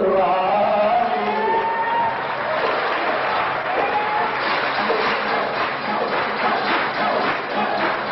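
Lebanese zajal: a group of voices chanting a refrain together, with hand-clapping from the audience joining in from about halfway through.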